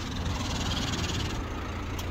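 Dacia Sandero Stepway's engine running at low revs, a steady low hum heard from inside the cabin, with a faint hiss above it that eases after about a second and a half.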